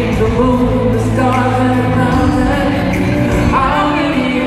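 Live band music with a male lead vocal, steady and loud, heard in the echo of a large concert hall.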